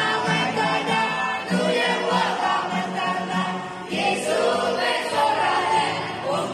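A group of young teenagers singing together.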